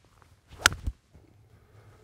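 Golf iron swing: a short swish of the club through the air, then the sharp crack of the clubface striking the ball, with a second, lighter knock a fraction of a second later.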